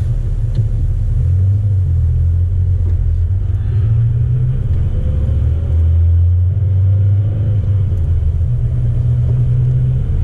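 Engine and road noise of a compact manual-transmission pickup truck heard inside the cab while driving: a loud low rumble that swells and eases as it pulls through the gears, the engine note rising about halfway through.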